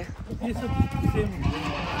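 A Sojat goat bleating: one long call lasting about a second and a half, starting about half a second in.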